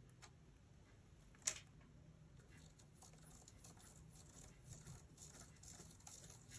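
Faint scratching of a felt-tip marker on paper as it traces a plastic Spirograph wheel around its ring, getting denser in the second half, with one sharp click about a second and a half in.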